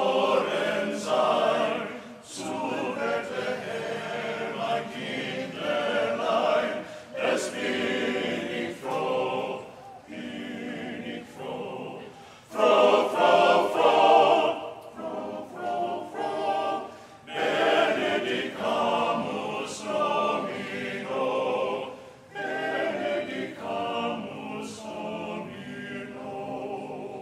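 Choir singing a German Christmas carol a cappella, in German, with loud phrases answered by quieter echo repeats.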